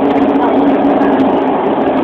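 Steady road and wind noise of a car travelling at highway speed, heard from inside the car, with a steady low hum running through it.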